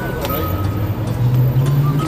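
A road vehicle's engine accelerating past, its low hum rising steadily in pitch, with a group's voices faintly behind it.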